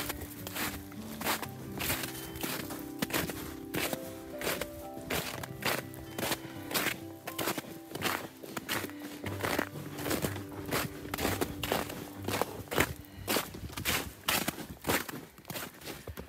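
Footsteps in snow on a trail, about two steps a second, under background music with long held notes.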